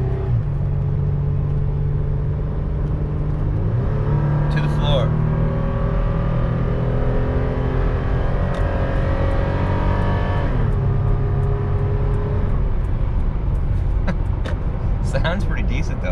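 Toyota 4Runner's 4.0-litre V6 heard from the cabin while towing a heavy enclosed trailer, working hard to get back up to speed: the engine note climbs steadily from about four seconds in, then drops suddenly about ten and a half seconds in as the automatic transmission upshifts, and carries on at lower revs over road noise.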